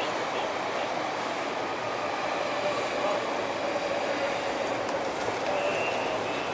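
A train crossing a railway bridge overhead: a steady, loud rumble with faint high squealing tones from the wheels, the highest near the end.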